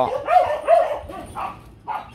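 Dogs squabbling: several short, high yips and barks in quick succession in the first second and a half, dying away after that.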